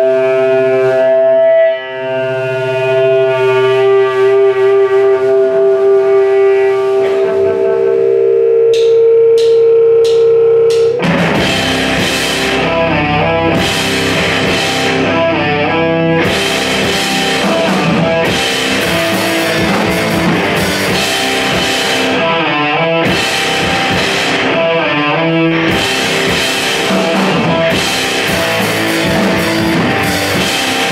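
A live rock band of distorted electric guitar, electric bass and drum kit. For about the first ten seconds the guitar and bass hold long ringing notes, a few sharp taps come near the ten-second mark, and then the drums and the full band come in together and play on loudly.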